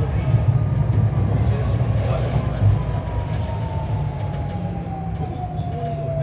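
Incheon Subway Line 2 light-metro train slowing into a station: the traction motors' whine falls steadily in pitch as the train brakes, over the low rumble of wheels on rail.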